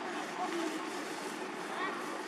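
Steady outdoor background noise with faint distant voices, and a short high rising call near the end.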